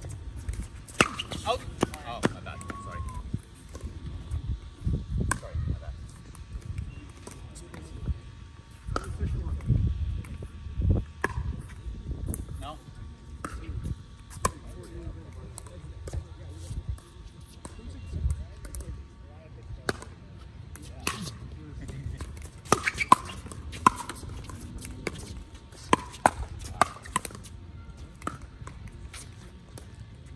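Pickleball paddles striking a plastic ball during doubles play: sharp clicks at irregular intervals, coming in quick runs during rallies, with faint voices in the background.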